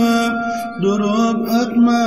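Unaccompanied vocal singing of a Turkish ilahi: a voice holds long, slightly wavering notes without words, breaking off just under a second in and taking up a new note.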